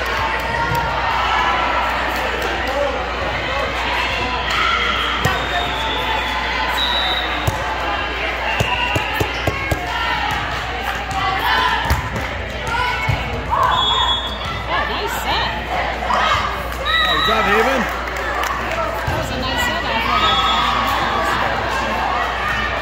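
Volleyballs being struck and bouncing on the floor of a large gym, several sharp hits scattered through, over constant chatter and calls from players and spectators across the hall.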